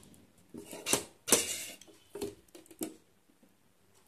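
Handling noise of a veroboard and a small metal tool on a tabletop: a few light knocks and short scrapes between about half a second and three seconds in, the loudest about a second and a half in.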